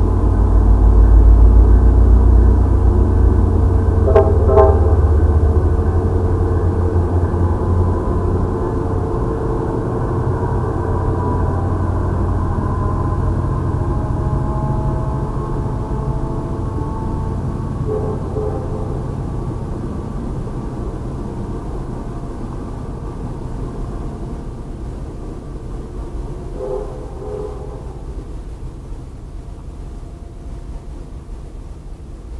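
MBTA commuter rail train's bilevel coaches rolling past on the track, a heavy low rumble that fades steadily as the train moves off. Brief ringing tones sound about four seconds in, with fainter ones later.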